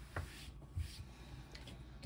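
Quiet room tone with a few faint, short taps and rubs of handling.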